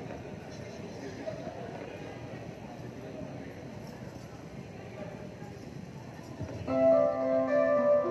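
Indistinct murmuring and room noise in a hall, then about six and a half seconds in a live band starts playing, loud and sudden, with held notes that step from one pitch to another.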